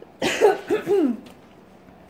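A woman's short laugh: a breathy burst followed by a few quick voiced pulses falling in pitch, lasting about a second near the start.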